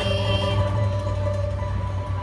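A string band's closing chord on acoustic guitar, banjo and upright bass ringing out at the end of the song. The higher notes die away about half a second in, while a low bass note holds on.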